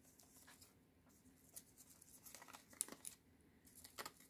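Near silence, with a few faint paper rustles and light clicks as die-cut paper flowers are handled and tucked into the cone.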